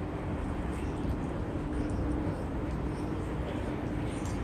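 Steady low rumble with a faint, even hum running through it, with no clear start or stop.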